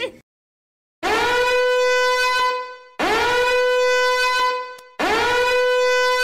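A horn sound effect of three long blasts, each sliding up into a steady high, brassy note and held for nearly two seconds.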